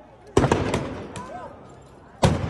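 Stun grenades going off: a loud sharp bang about a third of a second in, a second soon after, and a smaller third about a second in, each echoing briefly.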